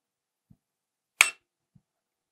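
Windshield lid of a Signal Fire AI-9 fusion splicer being closed: a faint knock, then one sharp click as the lid shuts a little over a second in, and a soft knock near the end.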